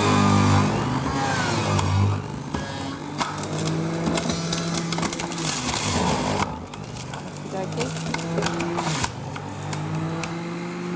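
Electric centrifugal juicer running as ginger and apple are pushed down its feed chute, a loud motor hum whose pitch dips and recovers as the produce is forced through.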